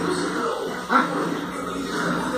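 A small dog barks once, sharply, about a second in, over a television playing in the background.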